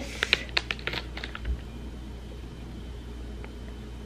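Plastic cookie wrapper crinkling and crackling as it is handled, a quick run of crisp crackles over about the first second, then only faint room tone.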